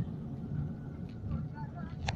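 Steady low rumble, with faint snatches of voice in the background about a second in.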